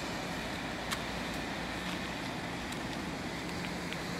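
Steady hiss and rumble of distant road traffic, with a single sharp click about a second in.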